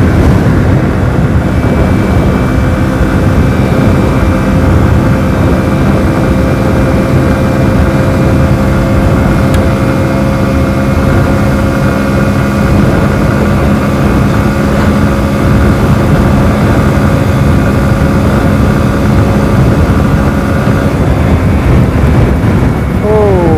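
Hero Splendor Plus BS6's single-cylinder four-stroke engine held flat out at a steady high pitch during a top-speed run of about 90 km/h with a pillion aboard, under heavy wind rush on the microphone. The steady engine note eases off near the end.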